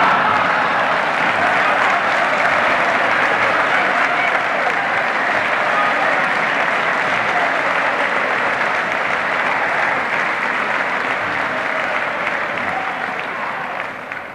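A large audience applauding and laughing, a dense, steady clatter of many hands clapping that eases slightly near the end.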